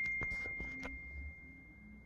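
A single bright bell-like ding ringing out and slowly fading away, gone near the end. A few soft clicks of handling noise fall in the first second.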